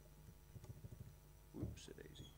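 Faint tapping on a laptop keyboard, picked up by the lectern microphone, with a brief muttered sound near the end.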